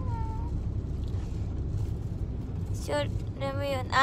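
Steady low rumble of engine and road noise inside a car's cabin. In the last second a woman's voice comes in, high-pitched and drawn out.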